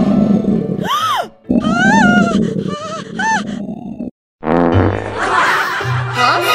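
Background music overlaid with cartoon-style comedy sound effects. About a second in there is a quick whistle-like glide that rises and falls, followed by a grumbling, noisy effect with wobbling pitch. The sound cuts out briefly just after four seconds, then the music resumes.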